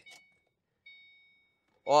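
Electronic warning chime from the 2009 Ford Mustang GT's instrument cluster as the ignition is switched on with the driver's door open: a short ding at the start and another about a second in, fading out over about half a second.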